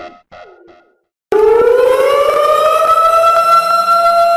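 A short tail of electronic music fades out, and after a brief silence a civil defense warning siren starts, about a third of the way in. It rises in pitch as it winds up, then holds one steady, loud tone.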